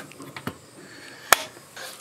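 A single sharp click a little over a second in, with a fainter tick before it: the power switch on a camper's cell phone signal booster being switched off.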